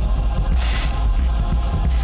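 Dramatic soundtrack with a deep, steady bass drone, a short hissing whoosh about half a second in, and a thin high tone entering about a second in.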